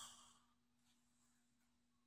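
Near silence: faint room tone with a low steady hum, after a short breathy exhale fades out in the first half second.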